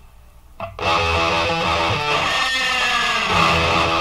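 Heavy metal band recording: distorted electric guitar riffing over bass and drums. The music stops dead for under a second, with one short hit in the gap, then the band crashes back in.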